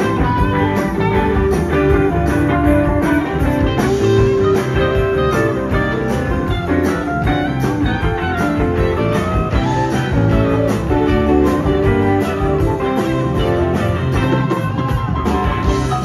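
Live rock band playing an instrumental passage with no singing: electric guitars over drums keeping a steady beat, with bass and keyboards.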